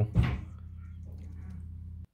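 A brief soft knock just after the start, then a steady low hum in otherwise quiet room tone.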